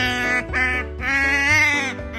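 Asian small-clawed otter giving three high, nasal begging calls, the last one longest and falling in pitch at its end, while asking for more food from the hand feeding it.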